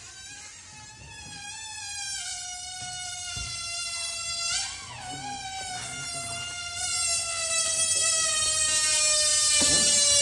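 Air squealing out of the pinched, stretched neck of a latex balloon: one long continuous squeal that slowly falls in pitch, wobbles briefly about halfway through, and grows louder toward the end.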